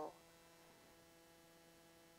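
Near silence, with only a faint steady electrical hum in the room tone.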